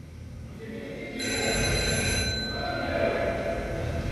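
A ringing sound made of several steady high tones enters about a second in and holds, over a low rumble that swells at the same moment.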